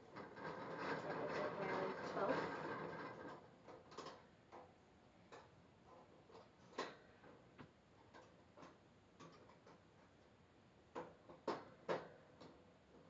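Small padlock and wire cage door being handled: light metallic clicks and rattles against the bars, a few distinct clicks spaced a second or two apart. A low voice-like murmur comes before them in the first few seconds.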